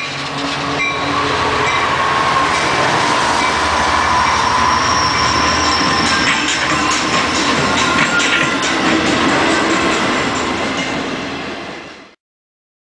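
Diesel-hauled Metrolink passenger train rolling past at close range: a steady rush of wheels on rails, with a thin, high steady squeal from the wheels ringing through. The sound fades out near the end.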